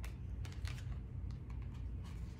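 Tarot cards being handled in the hands: a string of light, irregular clicks and taps as the cards are moved against each other, over a low steady hum.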